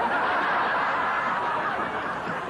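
Audience laughter: many people chuckling together in a steady, sustained wave.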